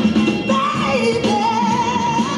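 Loud music with a singing voice played over speakers for a breakdance battle; the voice glides, then holds a wavering note from about halfway.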